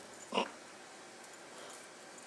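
A Legend Leopard kitten gives one short, brief mew about half a second in, over quiet room background.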